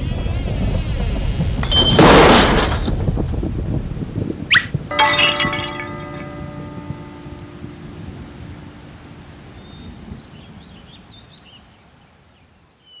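Cartoon sound effects of a stone building collapsing in a rainstorm: rain noise, a loud crash about two seconds in, then a second crash with a ringing metallic clang that fades out slowly. Faint bird chirps come in near the end as the noise dies away.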